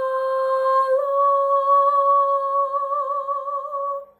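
A woman's singing voice, unaccompanied, holding one long final note. The note steps up slightly about a second in, gains vibrato through its second half and stops cleanly at the end.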